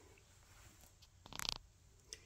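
A fine paintbrush scratching briefly in a small plastic jar of pigment, a short rustle of clicks about a second and a half in, with quiet room tone around it.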